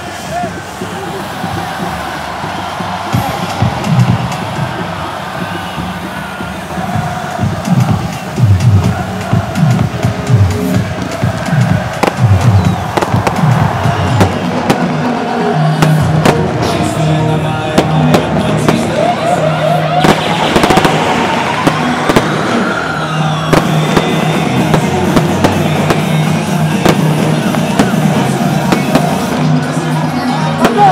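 Fireworks and pyrotechnics popping and crackling amid crowd noise, over loud music.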